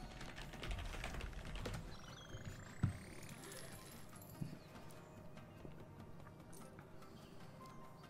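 Online video slot sound effects over quiet game music: quick clicks of symbols landing on the reels, a rising sweep about two seconds in, and a sharp hit as a win is awarded.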